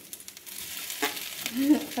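Slices of cake French toast sizzling in a hot stainless steel frying pan, with a slotted metal spatula clicking against the pan about a second in as a slice is worked free to flip.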